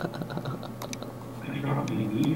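A few light, sharp clicks, then a faint voice from about one and a half seconds in.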